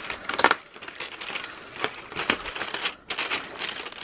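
Cardboard door of a Cadbury Dairy Milk advent calendar being pressed and torn open, with the foil wrapper of the chocolate inside crinkling: irregular crackling broken by a few sharp snaps, the loudest about half a second in.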